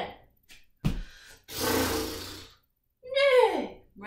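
A person doing jumping kicks on a yoga mat: a thud of hands and feet landing about a second in, then a long, loud breath out from the effort, and a short vocal sound falling in pitch near the end.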